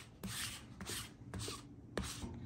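Sticky lint roller rolled back and forth over a cotton T-shirt, a rubbing sound on each of about three quick strokes.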